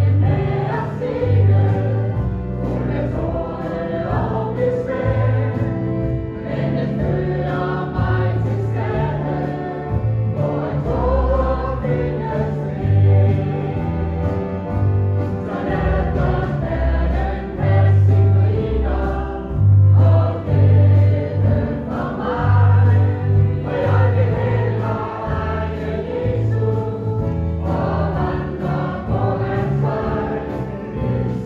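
A choir sings a gospel hymn over instrumental accompaniment, with sustained bass notes changing beneath the voices.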